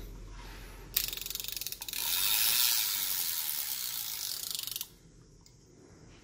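Spinning fishing reel being cranked by hand: a fast, dense run of fine ratchet-like clicks from its gearing that starts suddenly about a second in, grows louder, and stops abruptly near five seconds.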